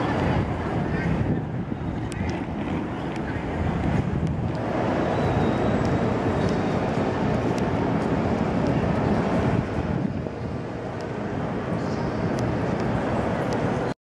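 Steady low rumbling ambient noise with indistinct voices and a few faint clicks, dipping briefly near the start and again toward the end.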